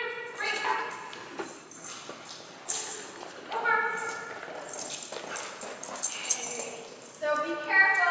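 A small dog whining and yipping in short, high-pitched calls, excited while it is lined up at a jump, mixed with a woman's voice and light rattling clicks.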